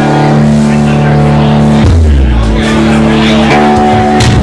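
Live jam-band music: electric bass under held keyboard or synthesizer chords, the chord and bass note changing about two seconds in.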